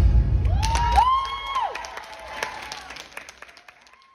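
The heavy-bass electronic backing track of a pop song ends about a second in. Audience applause and cheering follow, with rising and falling calls, then fade out.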